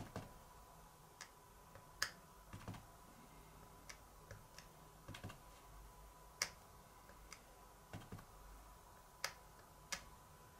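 Small clear acrylic stamp block tapping on an ink pad and pressing down onto paper card: faint, irregular sharp clicks and taps, about fifteen in all, the loudest about two, six and a half and nine seconds in, over a faint steady hum.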